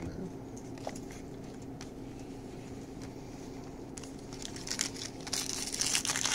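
Foil trading-card pack wrappers crinkling and tearing as packs are opened. The sound starts faintly about four seconds in and grows louder near the end, over a steady low hum.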